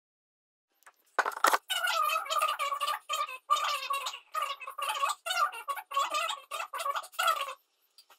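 A voice pitched up very high, in quick syllable-like bursts with no deep tones, like a sped-up voice effect. It starts about a second in and stops just before the end.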